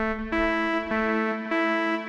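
Bitwig Polysynth software synthesizer playing one note and then the next, with glide off so the pitch steps straight from one note to the other instead of sliding. A low note is held throughout, and the new note enters about a third of a second in.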